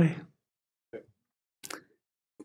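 A man's voice finishing a spoken word, then a pause broken by a faint mouth click about a second in and a short breath or mouth noise near the end.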